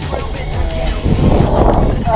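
Wind rushing over the camera microphone on a swinging giant-swing ride, swelling louder about a second in, with background music.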